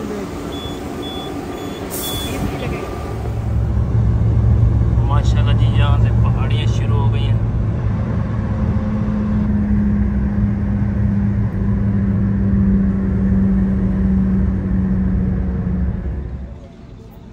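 Car driving along a highway, heard from inside the cabin: a steady, loud low road and engine rumble comes in about three seconds in, with a steady hum added from about eight seconds. Before it there is a quieter stretch with a brief hiss near two seconds, and a voice is heard briefly around five to seven seconds.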